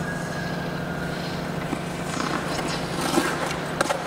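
Figure skate blades on rink ice during a loop jump demonstration. Faint gliding gives way in the second half to scraping blade strokes, with sharp blade strikes near the end at the landing. A steady low hum runs underneath.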